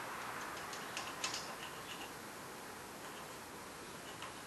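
Faint steady hiss with a few light clicks and taps about a second in and weaker ticks after, from a steel tape measure being shifted on a steel plate and a marker touching the plate.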